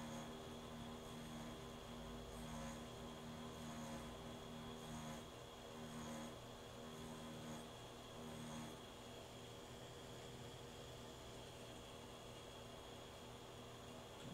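Pen-style rotary tattoo machine running with a steady buzzing hum while shading fake skin. Its tone swells and eases about once a second in short strokes, then settles to a steadier, slightly quieter hum about nine seconds in.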